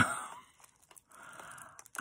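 A woman's exclaimed "oh" at the start, fading quickly, then a soft breathy sound in the second half with a couple of light clicks near the end from a beaded yarn-tassel charm being handled.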